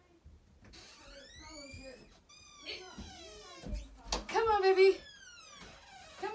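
A cat meowing, a few drawn-out calls falling in pitch, with a louder, steadier call about four seconds in that may be a person's voice.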